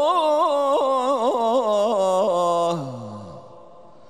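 A man's voice reciting the Quran in the melodic tajwid style, holding one vowel with a quick wavering ornament. About three seconds in it slides down in pitch to close the phrase, and the hall's echo fades out after it.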